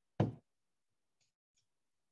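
A single short knock about a quarter second in, followed by a couple of faint ticks.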